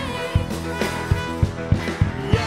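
Live worship band playing a contemporary Christian song: piano and trumpet over a steady beat, with the singing dropping back between sung lines.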